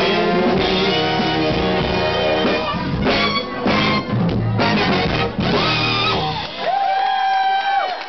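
Live funk band with a horn section, bass and drums playing loud and dense. About six and a half seconds in, the drums and bass stop and a single long note is held as the song's closing note.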